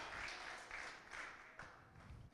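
Faint applause from a church congregation, fading away to near silence about a second and a half in.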